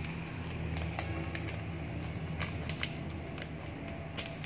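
Plastic gummy-candy pack being handled and pried open: irregular light plastic clicks and crinkles over a steady low hum.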